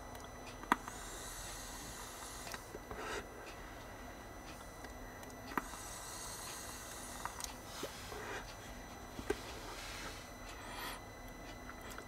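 Two soft airy hisses a few seconds apart, each starting just after a light click: a vape mod firing a freshly built NiFe30 coil in temperature control, about 25 W.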